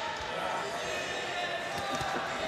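Arena crowd noise during a kickboxing bout, with indistinct voices in the hall and a few dull thuds from the ring, one shortly after the start and one near the end.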